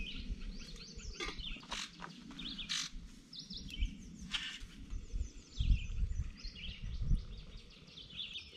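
Small songbirds chirping and singing continuously outdoors, with a few sharp clicks of handling and some low thumps on the microphone, the loudest of them past the middle.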